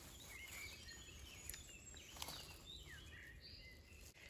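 Near silence with faint birdsong: scattered short chirps and whistles from small birds, plus two faint clicks.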